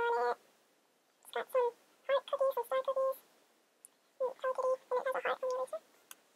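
A very high-pitched voice in quick runs of short syllables, in three bursts with pauses between.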